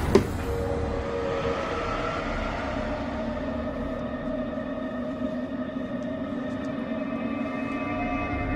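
A desk drawer pulled open, ending in a sharp knock just after the start. Then an eerie, sustained drone of suspense film score holds steady as a low chord.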